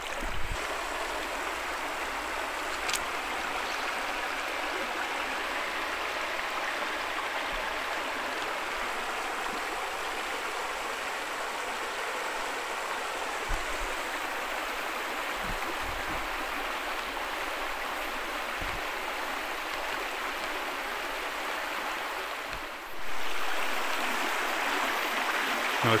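Shallow stream running over a stony bed: a steady rush and burble of water. About three seconds before the end it becomes louder.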